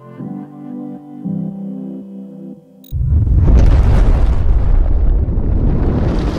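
Soft background music with slow held notes, cut off about halfway by a sudden, loud, rumbling explosion sound effect that keeps going.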